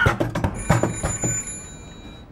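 Whack a Banker arcade machine: a few last sharp knocks in the first second and a half, and from about half a second in a high, bell-like electronic ringing that fades away by the end.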